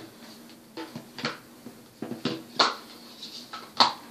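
Makeup containers clattering and clicking as they are handled and picked up, several sharp knocks with the loudest near the end.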